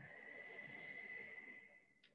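A woman breathing out slowly through the mouth: a faint, breathy rush with a thin steady whistle in it, fading near the end.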